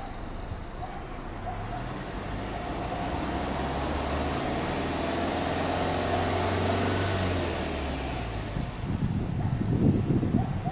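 Exhaust of a Subaru Legacy 2.0GT's turbocharged EJ20 flat-four, heard at the tailpipes as the engine is held at raised revs, growing louder, then settling back about eight seconds in. A short louder rush of exhaust follows near the end.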